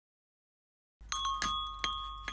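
About a second in, a single bell-like chime rings out and fades slowly. A few light clicks and a low hum sound with it.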